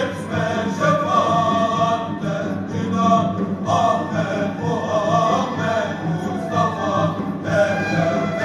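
Male choir singing a Sufi sema hymn in continuous melodic lines, with instrumental accompaniment underneath.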